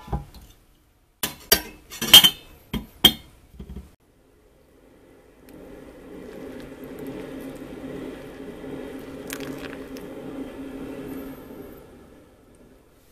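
A few sharp clinks and knocks of glassware and a metal kettle, the loudest about two seconds in. Then hot water poured from a stainless gooseneck kettle onto coffee grounds in a paper filter dripper, a steady pour lasting about six seconds and stopping near the end.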